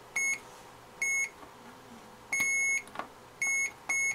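A digital multimeter's continuity beeper gives five high, steady beeps of uneven length, one for each time the probe touches a point with continuity. The test is a hunt for a shorted tantalum capacitor on a circuit board.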